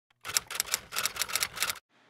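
A rapid run of sharp mechanical clicks, about eight a second, lasting about a second and a half and then stopping abruptly.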